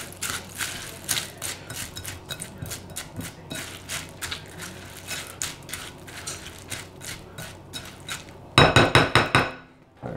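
Cornflakes coated in melted butter being stirred with a spatula in a glass bowl: a steady run of irregular crunchy scraping strokes. Near the end comes a quick cluster of louder knocks with a glassy ring, then it goes quiet.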